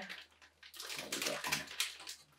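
Sealed minifigure blind bags being squeezed and felt in the hands, with soft crinkling rustles that start under a second in.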